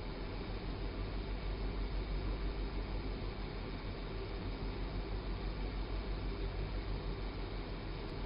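Steady room tone: an even hiss with a low hum underneath, with nothing else happening.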